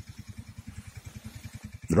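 A low, engine-like rumble with a rapid, regular pulsing, like a motor running nearby.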